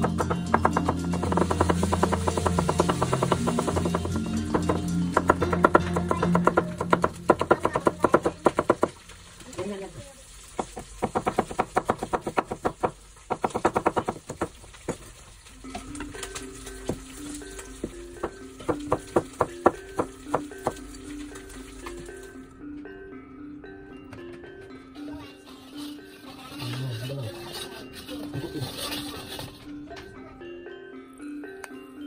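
A chef's knife chopping vegetables on a cutting board: rapid runs of sharp knife strikes that stop and start, with background music throughout.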